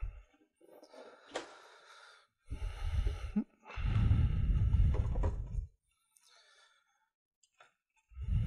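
A cardboard model-kit box being opened and its contents handled: light rustling and a click, then two longer scraping, rubbing passes as the lid comes off and the paper instructions and plastic sprues are moved.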